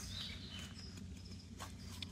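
Faint woodland ambience with a few short bird chirps, and a light scrape of a carbon-steel bushcraft knife shaving a wooden stick about one and a half seconds in.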